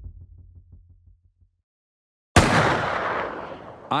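Music with a low, pulsing beat fading out over the first second and a half, then silence, then a sudden loud hit with a long noisy decay: a movie-trailer sound effect opening the next clip.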